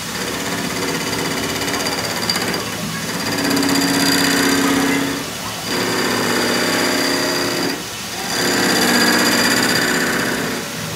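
Metal lathe cutting a spinning steel tube, the tool bit working its end face, with a steady tone and a rough rasp. The cut eases off briefly twice, about five and a half and eight seconds in.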